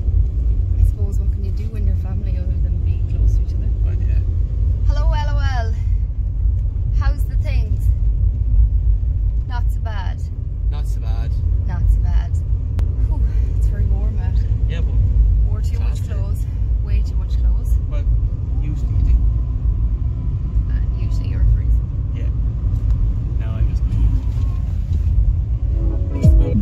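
Steady low road rumble of a moving car, heard from inside the cabin.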